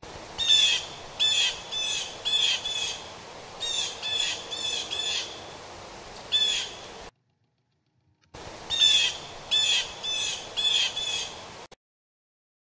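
Blue jay calling: a run of short, repeated calls, about two a second, over a steady faint hiss. It stops about seven seconds in and starts again after a pause of about a second.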